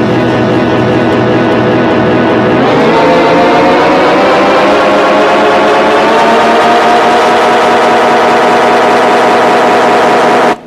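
Amplified acoustic guitar holding a loud, dense sustained drone. About three seconds in, its many tones glide upward together in pitch, then hold steady.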